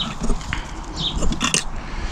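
Camera handling noise as it is moved: a few knocks and clicks over a low rumble. Short high chirps of a small bird come in around a second in.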